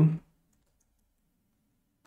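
A man's voice ends a spoken word, then near silence: only a faint low hum of room tone.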